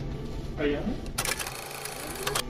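A burst of rapid mechanical clicking, like a film camera's shutter and winder, lasting about a second from just past the middle: a camera sound effect marking a cut to a film-style edit. Under it, a low steady hum with indoor murmur.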